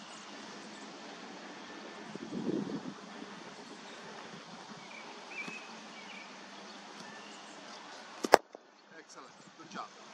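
A single sharp crack of a cricket bat striking the ball, a little over eight seconds in, over a steady background hiss.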